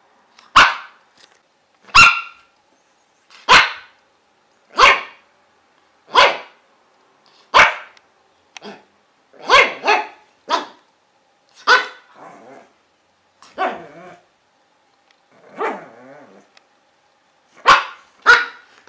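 A dog barking single, sharp barks, repeated about every one to two seconds, around a dozen in all.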